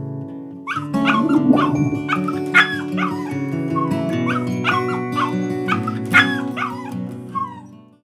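A small dachshund yipping and barking in a quick run of short, high calls, about two a second, over background music.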